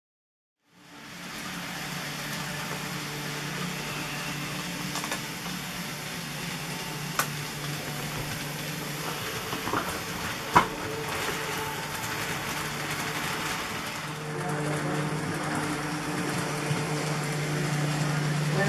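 N gauge model train running on the layout: the locomotive's small electric motor whirring steadily with the wheels rolling on the rails, starting about a second in. Two sharp clicks come in the middle, and the sound grows louder for the last few seconds as the train runs close by.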